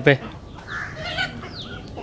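Domestic chickens clucking, with a few short, high, falling chirps.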